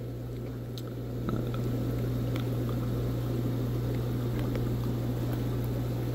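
Steady low hum with a bubbling, watery hiss from aquarium sponge filters and their air pumps; the hiss grows a little louder about a second in.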